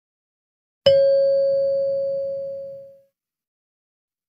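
A single bell-like chime: one clear ringing tone that starts suddenly about a second in and fades away over about two seconds.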